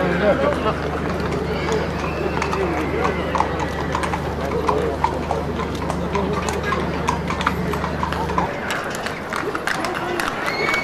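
Horses' hooves clip-clopping on hard ground, many sharp strikes, with people's voices around them. A steady low hum runs beneath and cuts off suddenly near the end.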